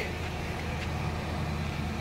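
Steady low hum inside the cabin of a running Lexus GX470 SUV.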